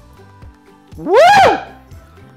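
A man's loud "woo!" about a second in, rising then falling in pitch: a whoop at the chili heat of the food he has just eaten. Background music plays underneath.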